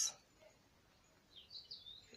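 A bird chirping faintly: a few short, high calls in the second half, over otherwise near-quiet room tone.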